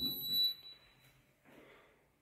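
Orona lift hall call button giving a single high-pitched beep as it is pressed to call the lift, fading out within about a second.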